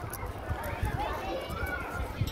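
Faint background voices of children talking, with a low, irregular rumble on the phone's microphone.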